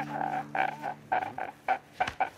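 A man sobbing in short, rapid gasping cries, about four a second, over a held low chord that fades out a little over halfway through.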